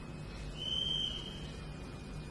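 A single steady high-pitched tone, whistle-like, lasting about a second, over the faint hiss and hum of the recording.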